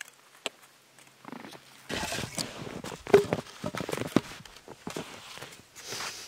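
A few faint sharp clicks, then from about two seconds in irregular crunching and rustling in snow with several sharp knocks of split wood pieces against each other.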